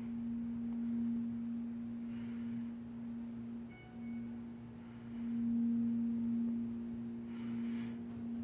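Steady low electrical hum from the Schindler hydraulic elevator, heard through its closed hoistway doors, dipping briefly about halfway through, with a couple of faint short beeps.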